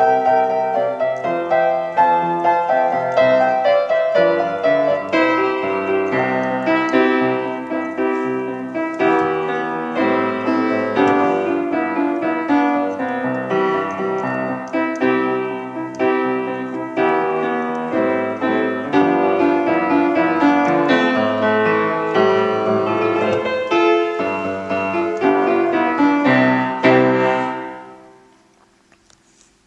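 1897 Steinway upright piano played with chords and melody in a steady rhythm; the playing stops just before the end.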